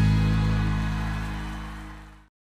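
The song's final low bass note and chord ringing out and fading away steadily, ending the music.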